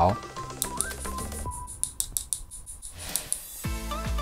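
Aluminium-alloy shell of a T80 mini soldering iron handle tapped lightly, a series of small sharp clicks, over background music. The taps sound thick-walled, which suggests a shell likely CNC-machined from solid aluminium bar.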